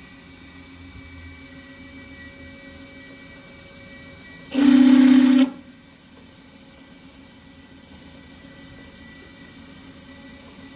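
Milling machine running with a steady hum while a drill is fed down into a pilot hole in a steel bar. About four and a half seconds in there is a loud burst of noise lasting about a second, after which the steady hum carries on.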